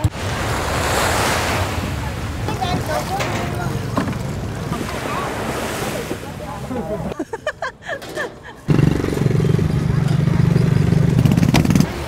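Surf washing up the beach with faint voices in the background. About seven seconds in, this breaks off into a choppy patch, followed by a steady low rumble to the end.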